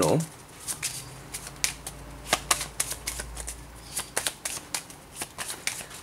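A deck of tarot cards shuffled by hand, overhand style: a string of quick, irregular card flicks and taps.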